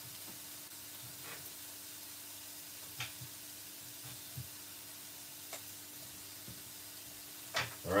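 Diced white onion and pineapple frying gently in a non-stick pan: a soft, steady sizzle under a faint low hum, with a few faint ticks.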